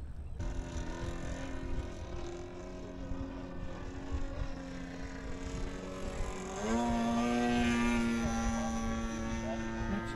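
Electric ducted-fan engine of a model jet in flight: a steady whine with overtones. About two-thirds of the way through, its pitch slides up and it grows louder, with more rushing air.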